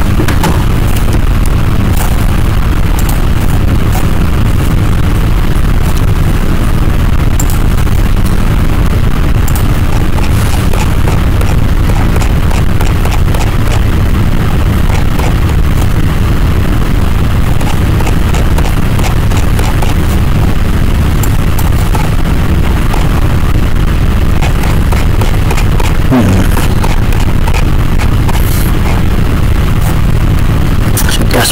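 Loud, distorted microphone noise: a steady low rumble with frequent crackling clicks and no speech. It is the sign of a faulty microphone or audio setup.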